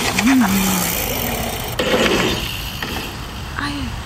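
Mountain bike riding down a dirt singletrack: tyre and trail noise that grows rougher about two seconds in, with two short murmured voice sounds, one just after the start and one near the end.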